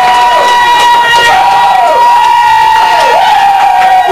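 A steady high electronic tone is held throughout, with a second tone swooping down and back up about three times, over a crowd cheering. It is very loud.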